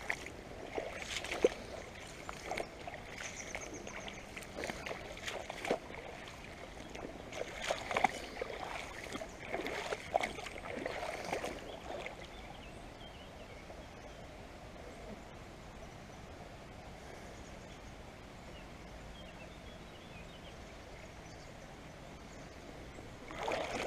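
Shallow river water running over a gravel bed, with irregular splashes and sloshing close by for about the first twelve seconds, then a steady, quieter rush of current.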